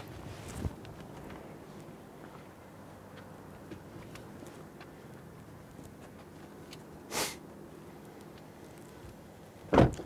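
Audi RS5 Sportback driver's door opening and a person climbing out: a few light clicks and rustles over a low steady background, one short sharp swish about seven seconds in, and a thump near the end.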